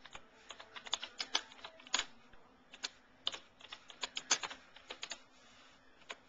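Computer keyboard being typed on: irregular runs of key clicks, thinning out near the end, as a forum role-play post is written.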